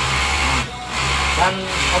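Overlock (serger) sewing machine running steadily as it stitches and trims the edge of a fabric pillowcase, its built-in right-hand knife cutting the seam edge as it sews.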